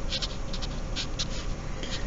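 Felt-tip marker writing on paper: a quick series of short scratchy strokes as a word is written out.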